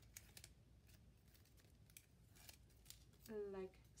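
Faint handling of a paper label strip: a few soft, sharp ticks and rustles as the backing is peeled off a printed label.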